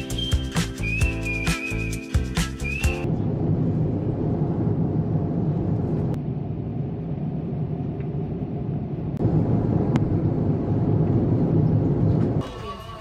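A short burst of upbeat music with a whistled melody that stops abruptly about three seconds in, giving way to the steady rushing noise of a jet airliner cabin in flight, a little louder over the last few seconds.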